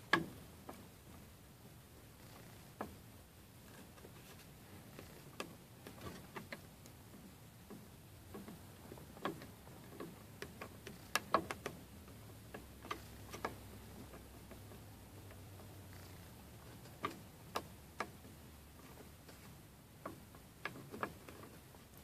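Faint scattered clicks and small knocks from hands holding two 3D-printed PLA plastic parts pressed together while glue sets, over a quiet room with a faint low hum for a few seconds in the middle.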